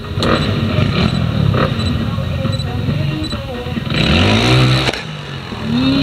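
Trials motorcycle engine revving in blips as the rider works the bike through a rock section, with a sharp climb in revs about four seconds in.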